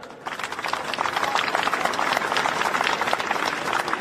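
A crowd applauding: many hands clapping, which starts about a quarter second in and holds steady.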